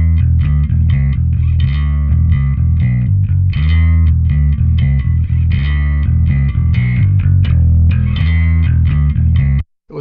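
Electric bass guitar played through the UAD Ampeg B-15N Portaflex amp plugin in its '66 mode: a plucked bass line of steady, even notes that cuts off suddenly near the end.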